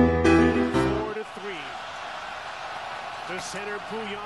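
Background music cuts off about a second in, giving way to a televised ice hockey game: arena crowd noise with a play-by-play commentator's voice.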